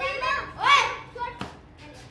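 Children's voices in short, high-pitched excited exclamations, the loudest a single call that rises and falls in pitch. A single sharp click follows about a second and a half in.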